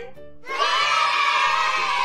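A group of children shouting and cheering together in one sustained cheer, starting about half a second in, as if answering "Are you ready?"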